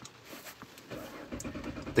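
A 2013 Chevrolet Camaro's 3.6-litre V6 being cranked over by its starter with the throttle commanded wide open for a compression test, turning at cranking speed without starting. The rhythmic cranking starts about a second in.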